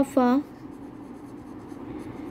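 Pen writing on ruled notebook paper, the nib moving quietly and continuously across the page as words are written out by hand.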